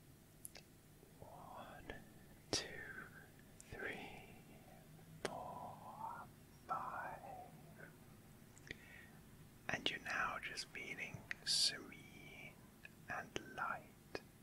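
A man whispering close to the microphones in short breathy phrases, with a few sharp clicks between them.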